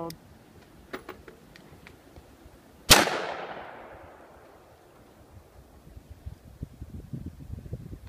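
A single 5.56 mm rifle shot from an LWRC M6A2 piston AR with its adjustable gas block on the third setting, about three seconds in, echoing away over a second or so. A few light clicks of handling come before it. No follow-up shot: the rifle fails to cycle, which the shooters take for a gas issue.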